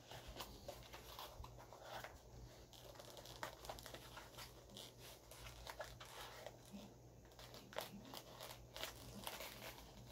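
Faint rustling and scattered small clicks of costume armor pieces, straps and fabric being shifted by hand as the armor is adjusted, over a low steady hum.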